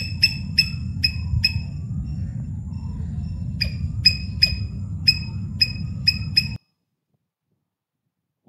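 A sound clip played from a presentation slide: a run of sharp, ringing clinks, roughly three a second with a pause of about two seconds in the middle, over a steady low rumble. It cuts off suddenly about six and a half seconds in.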